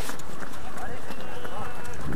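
Footsteps of a pack of runners on a wet road, heard from a camera carried by one of the runners, with indistinct voices among the pack.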